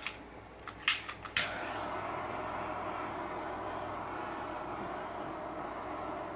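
Kitchen torch being lit: a few sharp igniter clicks, then it catches about a second and a half in and burns with a steady hiss. The torch is hard to light and is due to be replaced.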